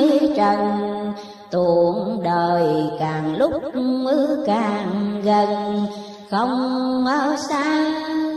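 Vietnamese chanted recitation of religious verse: slow melodic singing with long, wavering held notes over musical accompaniment, briefly dipping about a second and a half in and again past six seconds.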